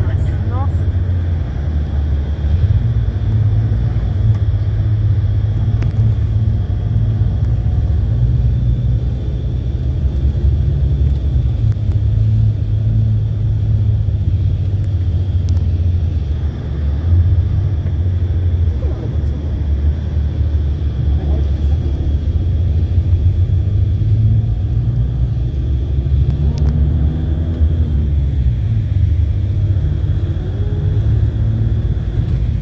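Steady low rumble of a bus on the move, heard from inside the cabin, with faint indistinct voices beneath it.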